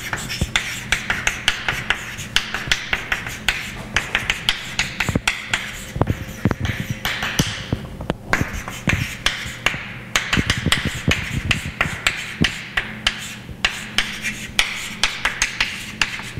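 Chalk writing on a blackboard: quick sharp taps of the chalk hitting the board mixed with short scratchy strokes, several a second in an irregular rhythm. A faint steady low hum runs underneath.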